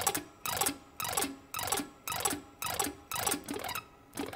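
Ibanez electric guitar on a clean tone playing a sweep-picked arpeggio over and over, about two sweeps a second, each with a sharp pick attack. The pick meets the strings straight, not angled, which gives each note more attack.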